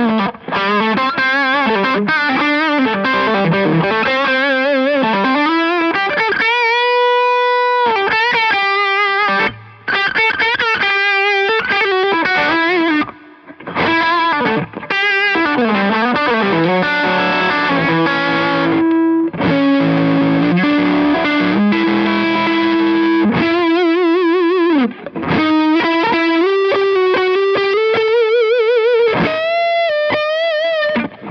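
Epiphone Les Paul electric guitar played through an overdriven amp: a single-note lead line with string bends, vibrato and long held notes, broken by a couple of short pauses.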